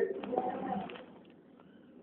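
A man's voice trailing off faintly, then a quiet pause of room tone.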